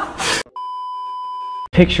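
A single steady censor bleep: one plain high-pitched tone held for about a second.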